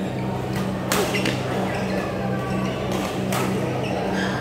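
Badminton rackets striking a shuttlecock during a doubles rally: a sharp smack about a second in and another a little after three seconds, with a third right at the end, over a steady low hum.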